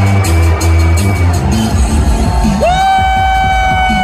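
Wrestler's entrance music played loud over the arena sound system, with a heavy bass line. About two-thirds of the way in, a long high held note slides up, holds, and then starts to slide away at the end.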